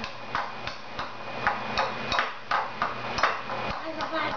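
Metal pastry blender repeatedly knocking and scraping against a bowl as soft avocado is mashed: short irregular clicks, about three a second.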